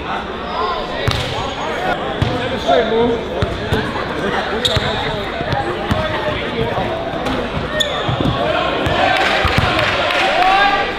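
A basketball bouncing on a wooden gym floor as a player dribbles, with short thuds scattered through, under the continuous chatter and shouts of a crowd of spectators that grows a little louder near the end.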